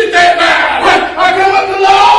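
A loud raised voice shouting in a sing-song chant, its pitches held and wavering.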